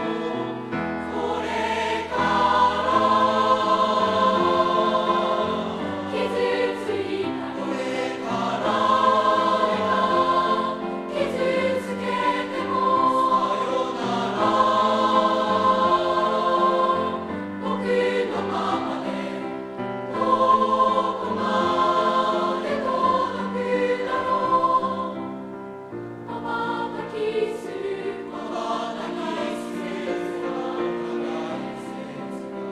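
Mixed junior-high school choir, girls' and boys' voices, singing a song in harmony with grand piano accompaniment, the sound swelling and easing phrase by phrase.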